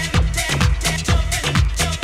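Electronic dance music in a DJ set, played from vinyl records through a mixer: a steady four-on-the-floor kick drum about twice a second under a bass line and hi-hats.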